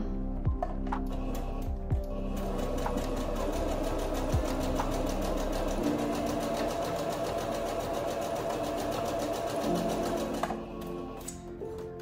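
Singer Patchwork 7285Q electric sewing machine stitching a seam at a steady, fast speed. It starts about two seconds in and stops shortly before the end, with background music playing underneath.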